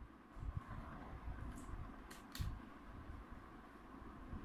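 Faint clicks and taps of hands handling and pressing on the plastic underside of a laptop, with two sharp clicks close together about two seconds in, over a low handling rumble.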